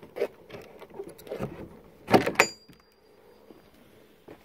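An old wooden door with a metal hinge and latch being handled and pulled open: a few soft knocks, then a loud clatter about two seconds in, followed by a short, thin metallic ring.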